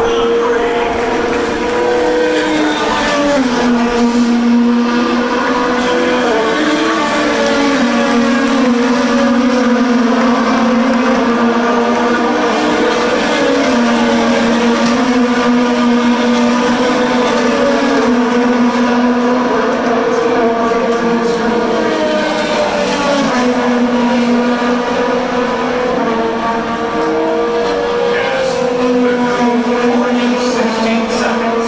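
IndyCar race cars' twin-turbo V6 engines running on the circuit, a steady high engine note whose pitch steps down and back up every few seconds as the cars shift gears.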